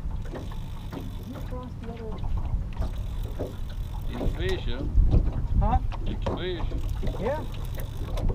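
Wind buffeting the microphone and river water moving around a small aluminium boat, a steady low rumble that swells about five seconds in. Over it come several short calls that rise and fall in pitch, bunched in the second half.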